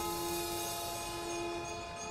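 A long, steady horn-like tone with many overtones, held at one pitch without a break.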